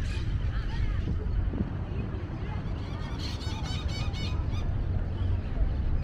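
Outdoor park ambience: a steady low rumble of wind on the microphone and distant traffic, with faint far-off voices. About halfway through, a bird gives a quick run of repeated high chirps lasting about a second and a half.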